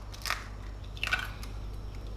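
Chicken eggshells cracking as eggs are broken by hand into a bowl: a short crunch about a quarter second in, and another crackle of shell about a second in.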